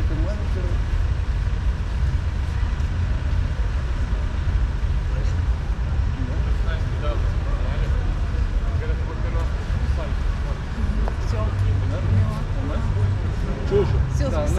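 Steady low rumble of outdoor city noise, with faint voices here and there.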